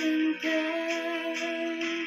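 A young woman singing a gospel song solo, holding one long note that breaks briefly about half a second in and then carries on.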